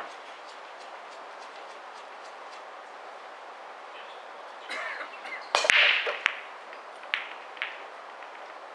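Nine-ball break shot: a loud crack as the cue ball smashes into the racked balls a little past halfway, then a short burst of balls clacking against each other and the cushions, followed by a couple of single ball clicks as they settle.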